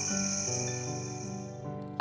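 Cricket chirring used as a night-forest sound effect over soft background music, both fading out; the chirring stops just before the end.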